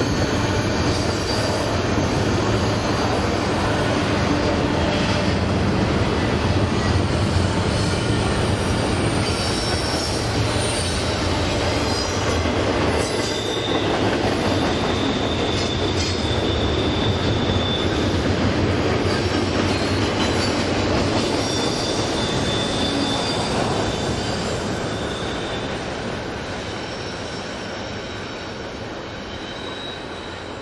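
Double-stack container cars rolling past on a curve, the steel wheels running on the rails with high wheel squeals that come and go. The sound fades over the last several seconds as the end of the train passes and draws away.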